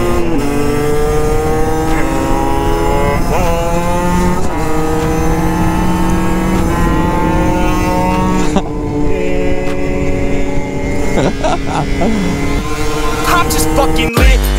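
Several small 50cc two-stroke motorbike engines running at high revs on the move, their pitch climbing slowly as they accelerate. About two-thirds of the way through the tone shifts and some pitches drop as a bike draws alongside.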